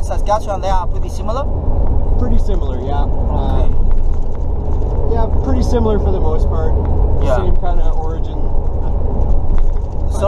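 Steady low road and engine rumble inside the cab of a moving Ford pickup truck, with a voice talking over it at intervals.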